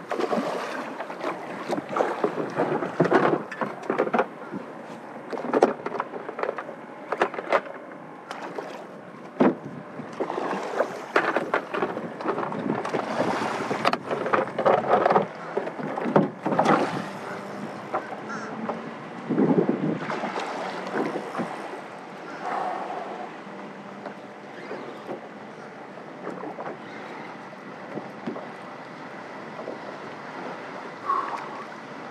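A large hooked snook thrashing and splashing at the surface beside a small skiff, with irregular splashes, knocks and scuffs on the boat and wind on the microphone; the bursts are busiest in the first half and thin out later.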